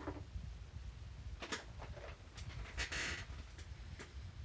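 A few light clicks and a brief rustle of small objects being picked up and handled on a desk, over a steady low hum.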